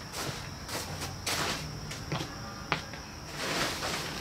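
Plastic tarp rustling and crinkling in irregular bursts as it is pulled and gathered up, with a sharp click about two-thirds of the way through.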